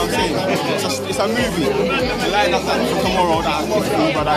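Speech: a man talking close to the microphone, with other people chattering around him in a large room.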